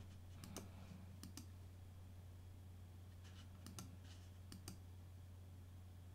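Faint computer mouse clicks, several in quick pairs, over a low steady hum, as menu items are chosen to load a saved configuration.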